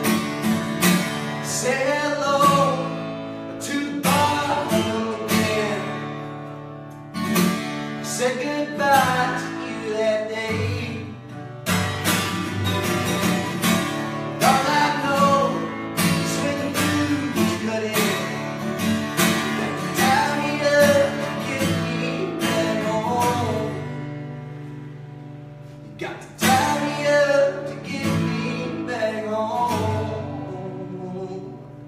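A man playing an acoustic guitar with strummed chords and singing along live, easing off briefly about four-fifths of the way through before the strumming picks up again.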